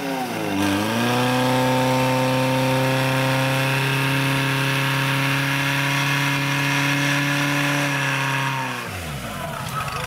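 Portable fire pump's engine held at high revs while it pumps water out to the attack hoses. The revs dip briefly just after the start, then climb and hold steady for about eight seconds, and fall away near the end.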